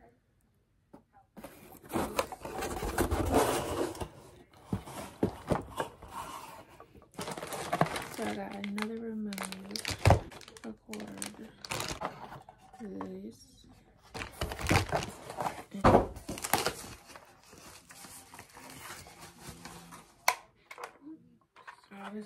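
Cardboard box and packaging being opened and handled: flaps pulled open, packing tape tearing, crinkling wrappers, and repeated sharp knocks and clicks of cardboard. A voice murmurs briefly a couple of times partway through.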